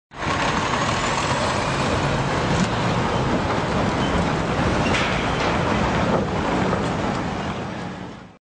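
Steady motor-vehicle running noise, fading out near the end.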